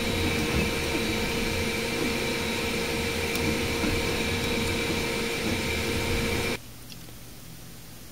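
Dremel DigiLab 3D45 3D printer running mid-print: a steady whir of fans and motors with a constant high whine. It cuts off suddenly about six and a half seconds in, leaving a much quieter steady room hum.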